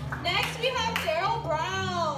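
Audience clapping that fades out at the start, then a high, lively woman's voice, amplified through a microphone.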